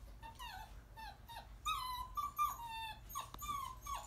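Seven-week-old puppy whining: a string of short, high-pitched whimpers, most falling in pitch, with the longest and loudest near the middle.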